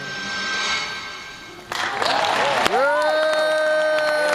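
Short film's soundtrack playing through an auditorium's speakers: music with a swelling hiss, then a sudden loud rush of noise about two seconds in, followed by one long held note.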